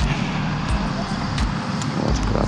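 Steady outdoor city traffic noise: a low rumble of vehicles with an even background hiss.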